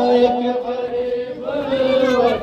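A voice chanting a noha, a mourning lament, holding one long steady note for about a second and a half before moving up into the next phrase.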